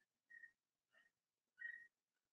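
Near silence, with three faint, brief, high-pitched whistle-like chirps spread across it, the last slightly louder.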